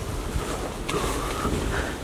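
Low rumbling noise on the camera's microphone as it is handled and swung around while walking, with a few faint knocks.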